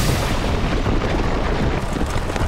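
Cartoon sound effect of an earthbending sandstorm: a loud rushing, rumbling wash of wind and grit that sets in suddenly and keeps up.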